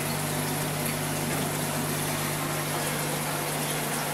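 Aquarium filter pump running steadily with a constant low hum, its outlet jetting aerated water into the tank with a continuous rushing, bubbling noise.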